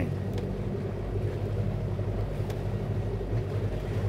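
Sailboat's inboard engine running steadily at low revs in forward gear, a low even hum.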